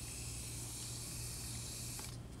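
Steady high hiss over a low, steady hum, with no speech.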